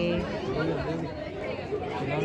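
Several people talking at once, their voices overlapping in casual chatter.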